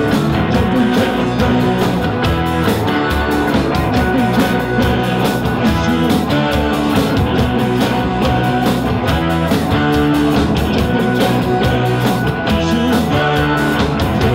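Live rock band playing with electric guitar, bass guitar, saxophone and a drum kit keeping a steady beat.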